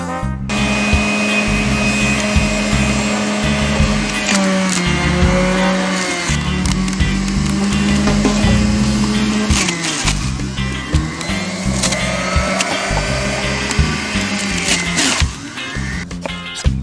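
Electric centrifugal juicer running with a steady motor whir, juicing green apples and greens; its pitch sags twice as the motor is loaded.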